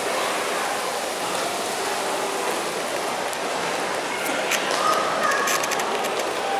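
Steady hiss of a large indoor shopping-mall atrium, with faint distant voices and a few light clicks in the second half.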